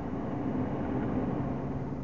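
Steady hum and hiss inside a stationary car's cabin.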